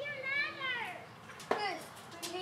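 A young child's high voice calling out, with a sharp knock about one and a half seconds in.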